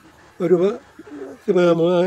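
A man speaking in short phrases, with a dove cooing faintly in the background.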